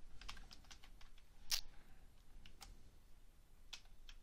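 Faint, irregular keystrokes of typing on a computer keyboard, with one louder keystroke about one and a half seconds in.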